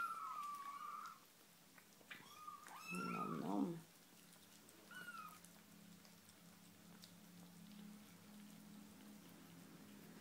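Four-week-old kittens mewing in high, thin calls: a long mew at the start, another about two and a half seconds in, and a short one about five seconds in. After that only a faint low steady hum remains.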